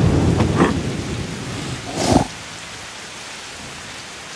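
Cartoon storm sound effect: heavy rain with a low rumble of thunder that ends suddenly with a brief louder burst about two seconds in, then steady rain hiss.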